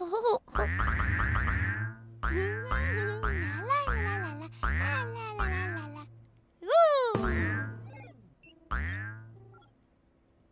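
A big ball bouncing again and again, each bounce a low thud with a springy boing that falls in pitch, about ten bounces at an uneven pace; one a little past halfway is a longer falling boing.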